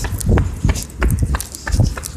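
Brisk footsteps on concrete pavement, about three steps a second, with a low rumble from a phone microphone being carried while walking.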